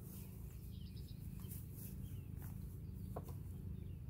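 Honeybee colony buzzing, a low steady hum from an open hive packed with bees, as a frame is lowered back into the box; a light knock about three seconds in.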